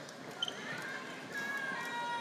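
Hum of a large hall with a seated audience. A sharp click comes about half a second in, then a high voice calls out a long, held note for about a second and a half.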